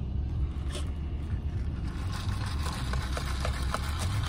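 Low steady rumble of a car idling, heard from inside its cabin. From about halfway through, light scraping and a few small clicks, as of a plastic cup being handled.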